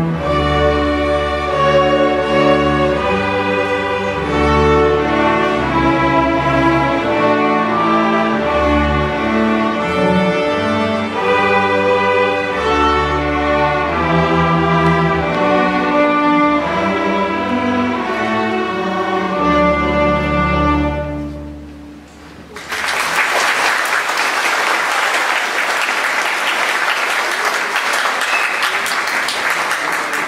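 A school string orchestra of violins, cellos and double basses plays the closing bars of a piece, ending on a held chord about two-thirds of the way in. After a brief pause the audience applauds.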